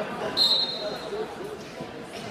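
A short, loud, shrill blast of a referee's whistle, about half a second long, over gym chatter and voices.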